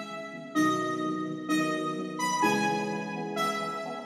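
Background music: sustained electric-piano-like keyboard chords, a new chord struck about once a second.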